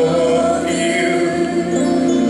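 Gospel music: a man singing a slow worship song into a handheld microphone over long held accompaniment notes.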